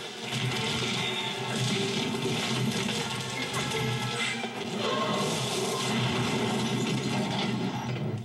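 Orchestral film score playing over the noise of a car crashing and sliding down through tree branches.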